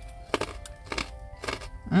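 Raw carrot stick being chewed with the mouth closed: a few short, crisp crunches spread over the two seconds, with faint music behind, and a brief "mm" right at the end.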